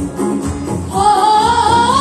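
A group of singers performing a Kashmiri song live over loudspeakers, with rhythmic accompaniment. About a second in, a high voice comes in louder, holding a sung line that slides upward.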